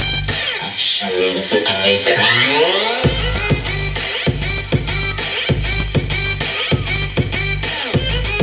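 Electronic dance music played loud through a large street DJ sound system's speaker stack. About half a second in, the kick and bass drop out for a breakdown with rising sweeps, and around three seconds in the heavy beat and bass come back in.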